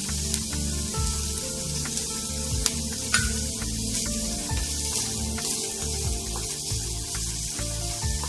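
Background music over the steady sizzle of chopped onions and green chilies frying in oil in a pan. A few sharp clicks from a wooden spatula stirring against the pan.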